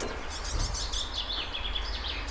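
Small songbirds chirping: a quick series of short, high notes starting about half a second in, over a steady low background rumble.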